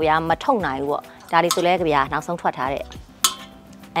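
A woman talking, with faint background music under her voice; a single sharp click a little after three seconds.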